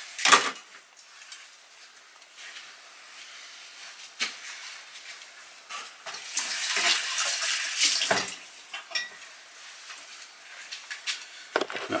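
Bacon and eggs frying in a non-stick pan: a sizzle that swells for a couple of seconds past the middle, with a few sharp knocks about four seconds apart.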